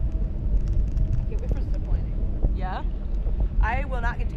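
Steady wind rumble buffeting the microphone of a camera carried aloft on a parasail. A person's voice calls out briefly twice in the second half.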